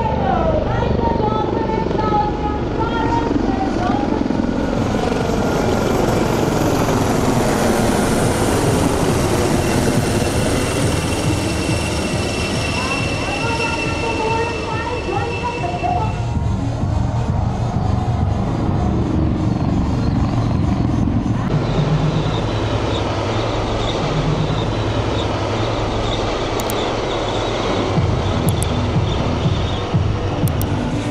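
Several HAL Dhruv helicopters flying past in formation, with a rapid rotor beat and engine tones that slide in pitch as they pass. The sound shifts about halfway through, when a high steady tone drops out.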